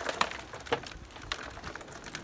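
Soft scattered crackles and small taps as gloved hands loosen a citrus tree's root ball, with potting soil crumbling and dropping into a plastic pot.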